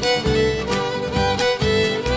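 Instrumental passage of a Tarija cueca: a violin melody over guitar and a steady bass-drum beat.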